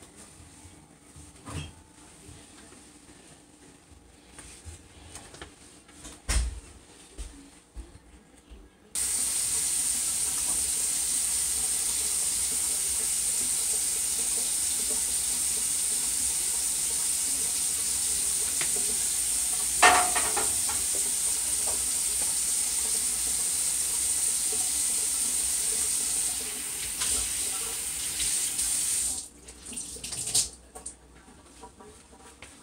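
Kitchen tap running steadily into the sink, starting suddenly about nine seconds in and cutting off just before the end, with one sharp knock partway through. A few light knocks come before the water is turned on.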